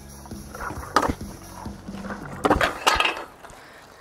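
Stunt scooter clattering on asphalt during a failed barspin: a sharp clack about a second in, then a few metallic clanks around two and a half to three seconds in as the scooter drops to the ground.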